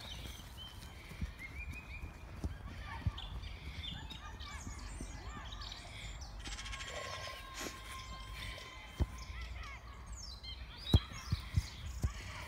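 A football being kicked on grass: a few dull thuds, the loudest about eleven seconds in, over a steady low rumble of wind on the phone's microphone.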